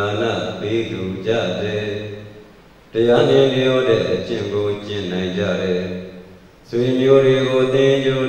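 A Buddhist monk's voice chanting into a microphone in long, held, steady-pitched phrases, breaking off briefly twice.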